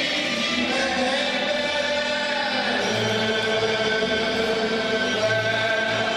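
Live Hungarian folk band, two fiddles and a double bass, playing a slow tune with long held, gliding notes and singing over it.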